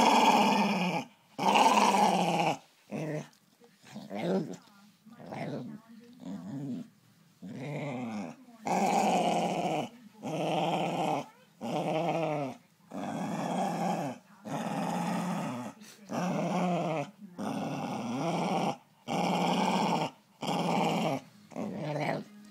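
Staffordshire Bull Terrier growling in a long series of separate growls, about one a second, with short breaks between them. The growls are shorter and quieter for a few seconds in the first third. The owner takes it for her being annoyed.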